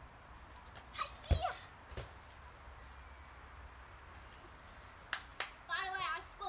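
Short, high-pitched vocal yelps from a child, about a second in and again near the end, with a dull thump under the first and a few sharp knocks between them.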